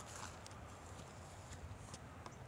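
Faint footsteps of a person walking, a few irregular steps over a low rumble.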